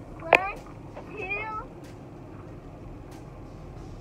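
Two short, high-pitched whiny cries from a small child: the first right after a sharp click about a third of a second in, the second a moment later. After that only the quiet background of the car cabin.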